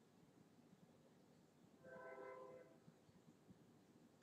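Near silence, broken about two seconds in by one faint, steady horn-like tone that lasts under a second.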